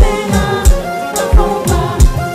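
Live konpa band playing: a deep kick drum in a syncopated pattern with cymbal hits, keyboard chords, and a woman singing lead.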